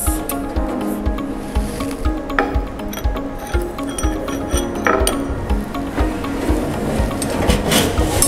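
Background music with a steady beat. Under it come a few scrapes and clinks as a porcelain crucible is set into a muffle furnace with metal tongs, and the furnace door is shut near the end.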